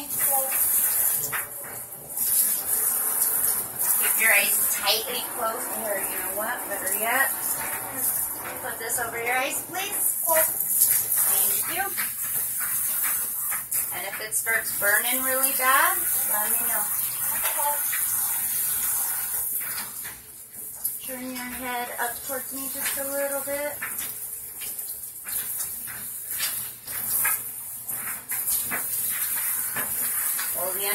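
Handheld shower sprayer running steadily, a hiss of water spraying onto hair, with indistinct voices talking over it.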